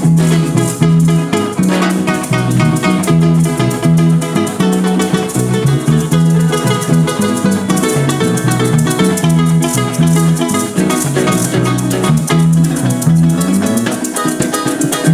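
Instrumental llanera music: a llanero harp plucking a fast melody over an electric bass line, with maracas shaking a steady rhythm throughout.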